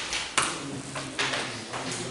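A few light, sharp clicks and taps in a meeting room, the loudest about half a second in, over faint room noise.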